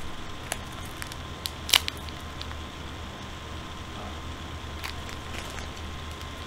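Handling noise: a few faint rustles and clicks as small homemade squishies are moved about by hand, the sharpest click a little under two seconds in, over a steady background hiss and hum.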